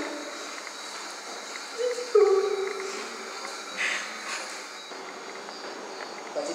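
A person's voice crying out: two short pitched cries about two seconds in, the second held and falling slightly, then a brief higher cry near four seconds.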